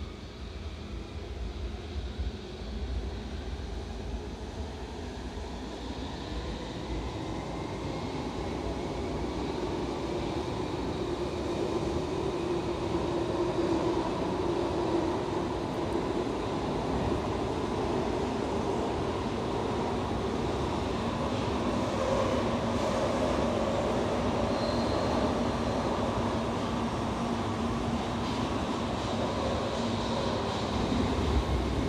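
Alstom metro train heard from inside the passenger car as it pulls away. The traction motors whine, rising in pitch over the first several seconds and growing louder as the train gathers speed. It then settles into a steady running noise of wheels on rail.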